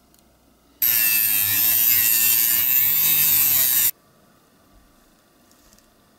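A high-speed rotary tool with a cutting disc runs for about three seconds. It starts and stops abruptly, and its whine wavers in pitch.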